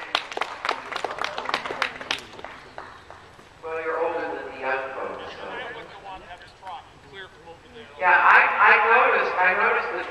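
Scattered clapping from a small crowd of spectators for about two and a half seconds, dying away, followed by a man speaking.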